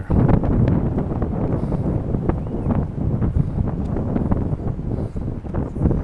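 Wind buffeting the microphone: a loud, uneven rumble with frequent short gusts.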